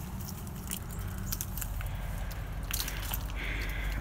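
Scattered light clicks and ticks from ice-glazed twigs and branches, irregular and sharp, over a low steady hum.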